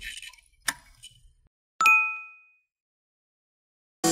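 Intro sound effects for an animated subscribe button: a short click, then a single bright ding about two seconds in that rings briefly and fades.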